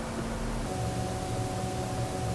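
Steady background hiss with a faint low hum, which becomes a little clearer about a second in: room tone, with no distinct event.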